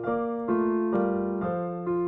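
Keyboard music, piano-like, playing held chords that change about twice a second.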